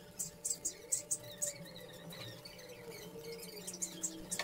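Wood glue squeezed from a plastic squeeze bottle along a joint: a run of short, hissy squirts and splutters from the nozzle, densest in the first second and a half, then fainter. A faint steady low hum sits underneath.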